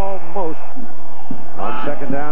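A man's TV play-by-play commentary, heard in short phrases with a brief gap in the middle, over a steady murmur of stadium crowd noise.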